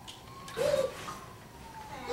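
A short hooting vocal 'ooh' about half a second in, over a faint thin tone that slowly rises and then falls.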